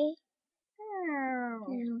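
A child voicing a toy pet: the end of a short 'okay' at the start, then one drawn-out 'nooo' that falls in pitch over about a second.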